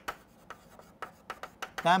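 Chalk writing on a chalkboard: an irregular run of short taps and strokes as letters are written, with a man's voice starting near the end.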